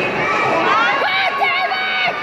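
Boxing crowd shouting and cheering the fighters on, with several high-pitched voices yelling over each other from about half a second in.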